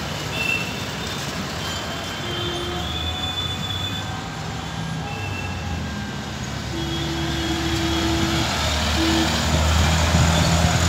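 City road traffic going by: a steady wash of engines and tyres, growing louder near the end as vehicles pass close. A few short steady tones sound over it, the longest lasting about two seconds.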